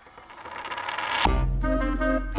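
Instrumental music opening: a shimmering swell rises in loudness for just over a second, then breaks off as the full music comes in with sustained chords over a low bass note.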